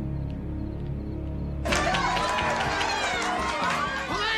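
Low, steady background music, then about a second and a half in a crowd breaks in loudly, shouting and cheering over the music.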